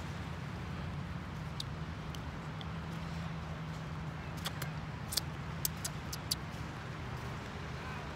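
Steady low outdoor rumble, with a scatter of small sharp clicks and lip smacks from about halfway through as a hard lollipop is sucked.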